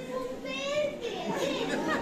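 Indistinct children's voices talking and chattering in a large hall.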